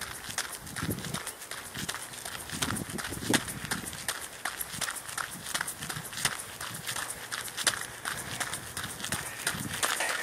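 A jogger's running footsteps, an even patter of about three footfalls a second, picked up by the camera he holds while he runs.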